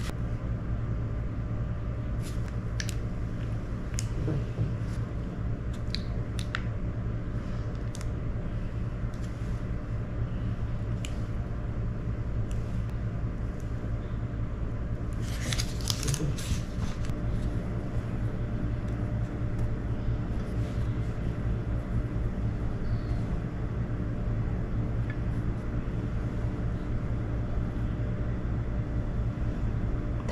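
A steady low hum, with faint scattered clicks and rustles of hands working a plastic piping bag of icing over a metal muffin tin, and a short flurry of rustling about fifteen seconds in.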